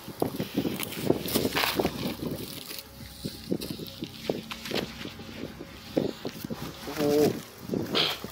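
Irregular rustling and crunching from footsteps on dry grass and from handling a padded nylon rifle case laid on the ground, its flap and contents being pulled open. A brief voice sounds near the end.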